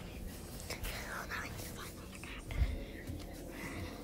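Soft whispering, breathy and without clear words, with a dull low thump about two and a half seconds in.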